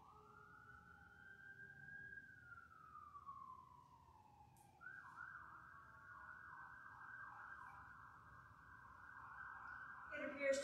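Faint emergency vehicle siren: a slow rising and falling wail that switches, about five seconds in, to a fast yelp.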